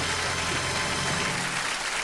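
Studio audience applauding, with a band's low held chord underneath that stops near the end.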